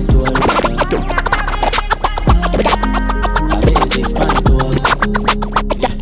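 Dancehall DJ mix with turntable-style record scratching over a bass-heavy beat, a run of rapid sharp scratch strokes between vocal lines.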